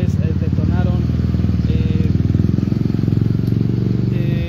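Truck engine running steadily at idle close by: a deep, rapid, even throb.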